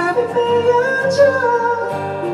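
Live acoustic-band music: a male vocalist sings held notes that bend in pitch, over acoustic guitar and keyboard accompaniment.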